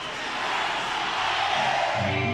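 Arena concert crowd cheering and shouting, slowly swelling in answer to the singer's call to be louder.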